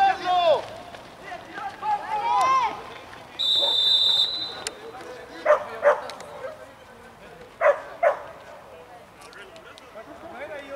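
Players shouting on the pitch, then one steady referee's whistle blast lasting about a second, stopping play after a tackle. Later come two quick pairs of short, sharp calls.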